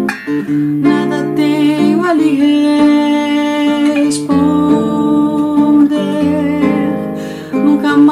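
Nylon-string classical guitar playing a slow valsa choro (choro-style waltz) accompaniment, picked chords changing every second or two with notes left ringing.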